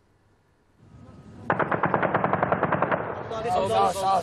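Automatic gunfire: a rapid, sustained string of shots starting about a second and a half in. Near the end, men shout over more shots that someone is wounded.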